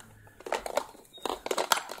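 Hard plastic pieces of a toddler's ball-drop tower toy knocking and rattling as the toy is lifted and stood upright, a series of sharp clacks with rustling between them, the loudest near the end.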